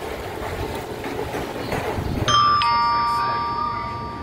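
An electronic two-note "ding-dong" chime sounds a little past halfway through: a higher note, then a lower one a moment later, both ringing on and slowly fading. Before it there is a steady wash of churning water in a tide-pool touch tank.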